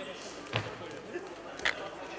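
Two sharp slaps about a second apart, the first with a deeper thud and the second louder, from wrestlers grappling on a mat, over the steady chatter of spectators in a large hall.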